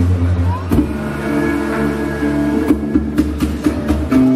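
Bowed electric bass holding low, steady drone notes, with higher sustained tones layered over it in a slow ambient band passage. A few sharp taps come in the second half.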